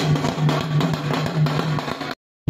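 Dhol barrel drums and a side drum played together in a fast, dense beat, with a steady low tone underneath.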